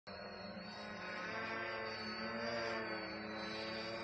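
Quadcopter hovering: its brushless motors and propellers give a steady, multi-toned hum with a thin high whine above it.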